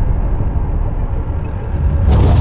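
Cinematic sound effects for a logo animation: a deep, continuous low rumble, the decaying tail of an explosion boom as shattered stone flies apart. A brief high swish comes near the end.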